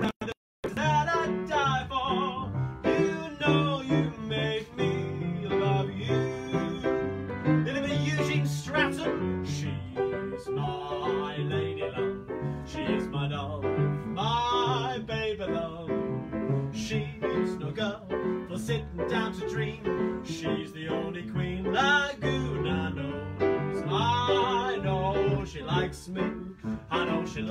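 Upright piano played in a lively old-time sing-along style, with a man's voice singing along. The sound cuts out briefly just after the start, then the playing runs on without a break.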